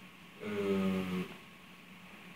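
A person's voice holding one short vocal sound at a steady pitch, lasting under a second, starting about half a second in.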